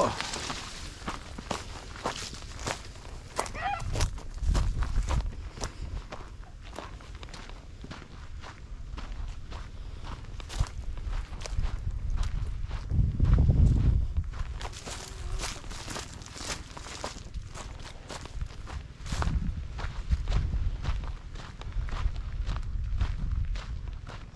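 Footsteps crunching through dry grass, twigs and brush, irregular and continuing throughout. A few low rumbles come through, the loudest about halfway through.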